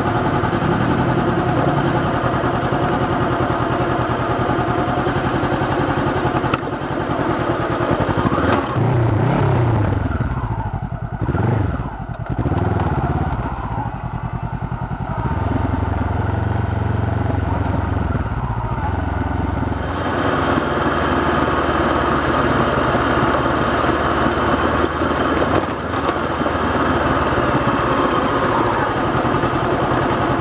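A 2013 Honda CB500X's parallel-twin engine through a Staintune exhaust, ridden on a rough dirt road. The revs rise and fall through the first half, then the engine runs more steadily.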